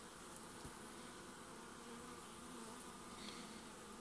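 Faint, steady hum of honeybees crawling over a brood comb on a frame held out of an open hive.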